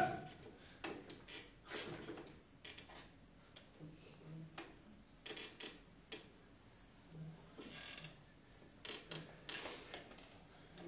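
Faint, scattered small clicks, taps and rustles with quiet gaps between them.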